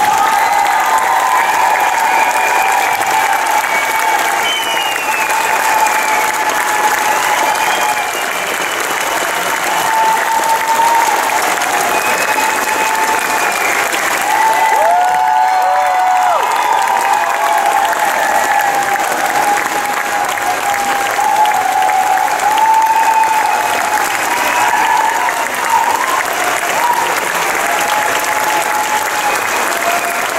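Theatre audience applauding steadily, with long held pitched cheers from voices in the crowd ringing out over the clapping.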